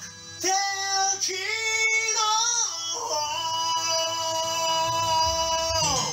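Wordless high singing over a music backing track: a voice sliding between a few short notes, then holding one long steady note for nearly three seconds before dropping off at the end.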